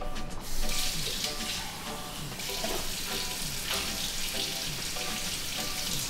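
Kitchen tap running into a stainless steel sink as an object is rinsed under the stream; the water starts about half a second in and runs steadily.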